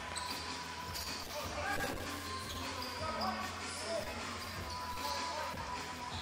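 A basketball bouncing on a hardwood gym floor during play, under faint voices and background music.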